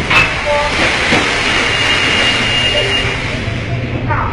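Storm wind and heavy sea rushing past a container ship in an even, loud noise, with wind buffeting the microphone. A thin high whistle sounds for about a second and a half in the middle.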